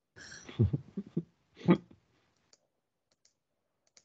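Computer keyboard and mouse clicks: a cluster of sharp clicks in the first two seconds, then a few faint ticks.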